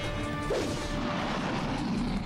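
Animated fight-scene sound effects: crashing and rushing noise with a faint music bed, at a steady level.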